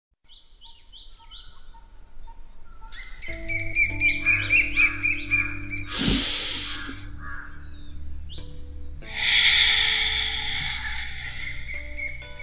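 Birdsong chirping in short repeated calls, joined about three seconds in by soft music with long held notes; a brief whoosh cuts across about six seconds in, and the music swells again near nine seconds.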